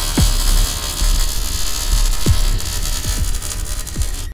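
Electronic logo-intro sound design: a deep, steady bass drone under a hiss, with quick downward swoops about a quarter second in and again a little past two seconds.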